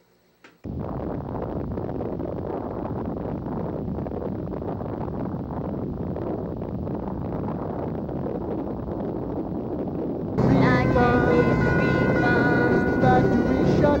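A sudden explosion sound effect about half a second in, which goes on as a steady rumbling roar for about ten seconds. A song with singing takes over near the end.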